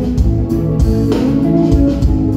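Live rock band playing an instrumental passage through a PA: guitar-led chords that change about every half second, with bass, keyboard and drums underneath.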